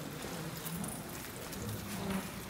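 Faint, steady hiss of background noise with a faint low hum underneath.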